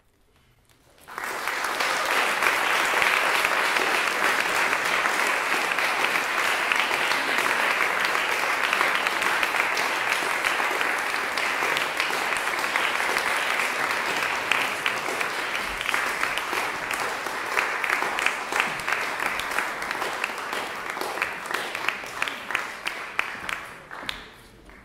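Audience applauding in a small concert hall. It starts suddenly about a second in after silence, holds steady, then thins into separate claps and fades near the end.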